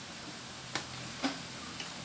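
Two light ticks about half a second apart, with a fainter third near the end, over a steady low hiss.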